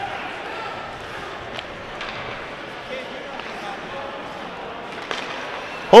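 Ice hockey rink ambience during play: a steady hiss of skating and arena noise with faint distant voices, and a few faint knocks from play on the ice.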